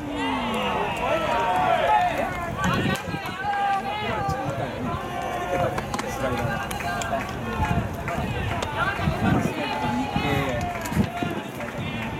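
Several voices shouting and calling out over one another throughout, loud and uneven, with no clear words.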